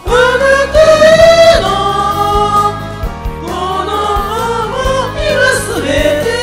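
Several voices singing a Japanese pop ballad together over a karaoke backing track, holding long notes and gliding between them.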